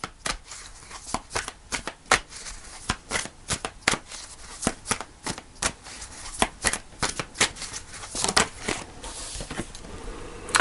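Tarot deck being shuffled by hand, the cards snapping against each other in quick, irregular clicks, a few a second.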